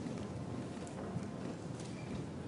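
Low, steady murmur of a sumo arena crowd, with a few faint sharp clicks.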